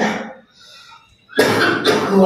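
A man coughing into his hands: one loud cough breaks out about a second and a half in, after his speech trails off.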